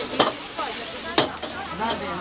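Rice noodles sizzling in a hot wok over a gas burner, stirred and tossed with a metal ladle that strikes the wok twice, about a second apart.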